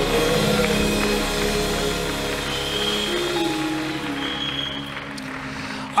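Soft live church band music between the preacher's phrases: long held chords over electric bass guitar, slowly getting quieter.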